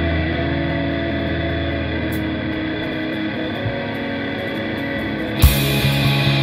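Electric guitars ringing out sustained chords in an instrumental rock passage. About five and a half seconds in, the drums come in with a loud cymbal crash and the full band joins.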